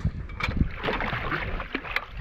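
Water splashing as a hooked fish thrashes at the surface and is scooped into a landing net at the boat's side, with wind rumbling on the microphone.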